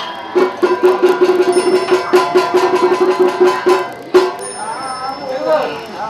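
A fast, even roll of strikes on a wooden fish (mõ) for about three and a half seconds, with a small bell ringing over it, ending on one sharp strike. A voice then begins Buddhist funeral chanting.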